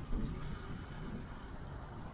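Steady low rumble of city street traffic, with a brief louder bump just after the start.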